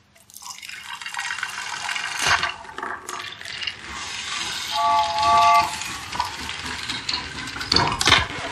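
A homemade chain-reaction contraption with a wooden toy train and a record player running: continuous rushing noise with scattered clicks, a sharp knock a couple of seconds in, and a short steady tone in two parts near the middle.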